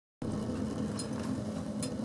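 Wood-pellet rocket stove boiler burning: a steady noise of the fire with a steady low hum under it, starting suddenly just after the start, with a couple of faint ticks.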